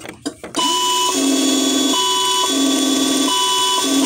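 Electronic reverse-warning beeps from the Diecast Masters 1:16 Freightliner Cascadia RC truck's sound module, three beeps about 1.3 s apart, each about half a second long. Under them is the steady whir of the electric drive motor spinning the lifted rear wheels, with a few clicks just before the beeping starts.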